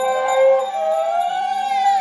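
Women singing a devotional song together in long held notes that slide slowly in pitch.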